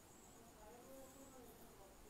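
Near silence: faint room tone with a steady, high-pitched insect chirring, and a faint murmured voice about a second in.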